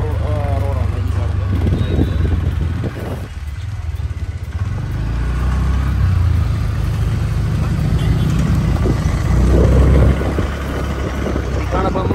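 Motorcycle running along a town road, heard from the rider's seat as a steady low rumble of engine and wind noise on the microphone. It dips briefly about three seconds in and swells again near ten seconds.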